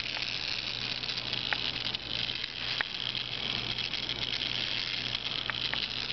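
Small battery-powered electric gearmotor of a walking-leg robot running, a steady high whir, with a few light clicks about a second and a half in, near three seconds, and twice near the end.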